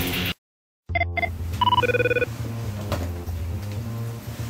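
Background music cuts off into a brief dead silence, then an electronic telephone rings: a few short beeps, one higher tone followed by a lower buzzy one, over a low steady hum.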